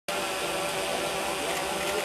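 A steady rushing outdoor noise with the faint murmur of a crowd's voices beneath it.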